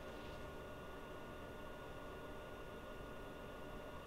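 Faint steady hiss of room tone, with a thin steady high tone running under it.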